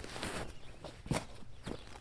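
Footsteps scuffing on grass, then crunches as a flat spade's blade is pushed into the turf. A sharp crunch comes about a second in.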